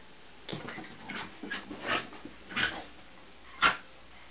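Two dogs play fighting, giving a string of short growls and barks, the loudest one near the end.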